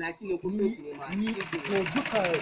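Sewing machine stitching: a rapid, even run of clicks, about ten a second, starting about a second in, under people's voices.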